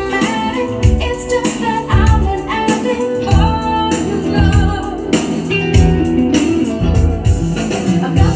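A song with a singing voice, guitar and a steady beat, played through a PWT SHE V2 transistor audio amplifier board under audio test.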